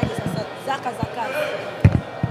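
Handheld microphones being bumped and jostled in a press scrum: a series of short, deep thumps, about seven, with the loudest pair near the end, over a murmur of voices.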